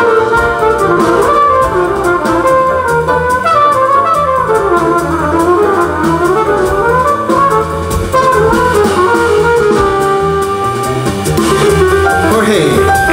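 Live jazz band: a trumpet solo, its melody sweeping up and down in long phrases, over keyboard, upright bass and drum kit.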